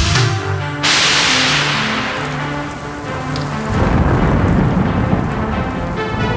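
Breakdown in a 1993 synth-pop/electro track: the drums drop out and sustained synth bass notes continue. About a second in, a loud wash of rain-like noise sweeps down and fades. Near the middle, a low thunder-like rumble comes in under the music.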